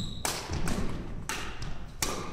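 Badminton rackets striking the shuttlecock in a quick rally: about three sharp hits roughly half a second apart.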